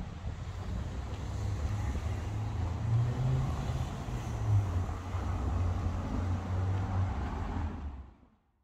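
Road traffic at a street junction: a steady low rumble of cars passing, swelling a couple of times, fading out at the end.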